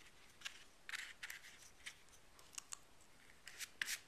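Faint, irregular crinkles and rustles of magazine-paper cut-outs being handled, a dozen or so brief crackles, a few of them louder near the end.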